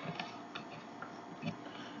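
Quiet room tone with a few faint, irregularly spaced clicks.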